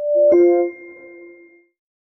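Short chime of a logo animation's sound logo: a brief note, then a struck chord that rings out and fades within about a second and a half.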